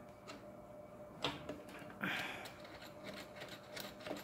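Handling noise from a pyrography (wood-burning) machine: a sharp click about a second in and a short scrape about two seconds in, with a few faint ticks, as a burner pen's plug is fitted into the unit's front socket and the box is handled.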